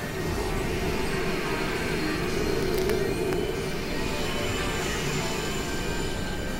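Dense, layered experimental electronic music: a continuous noisy drone with a strong low-mid band that swells in the middle, faint steady tones above it, and a couple of small clicks.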